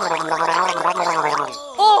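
A man gargling water in his throat while voicing held notes that step down in pitch, like a tune sung through the water; it breaks off about a second and a half in. A short, loud 'oh!' follows near the end.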